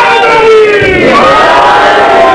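A man's voice chanting a qasida in long, drawn-out sung notes that glide up and down, heard through a microphone.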